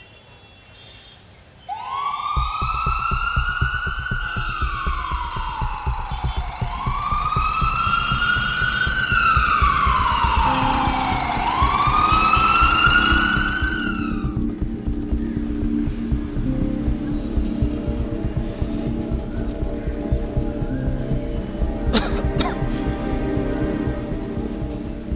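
Ambulance siren wailing, slowly rising and falling about three times before it stops about fourteen seconds in. Film score music with a steady pulsing beat plays under it and carries on after.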